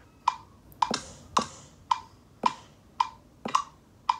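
GarageBand app's metronome clicking from an iPad speaker: short, evenly spaced wood-block-like ticks, just under two a second, keeping time before a drum part is recorded.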